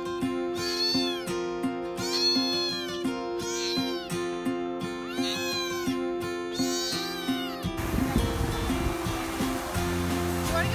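A small kitten meowing over and over, about six high, arching meows roughly a second apart, that stop near the end.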